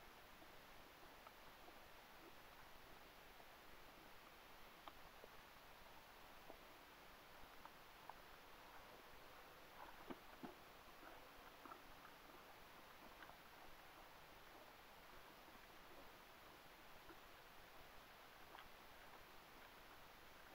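Near silence: a faint steady hiss with a few faint, scattered ticks.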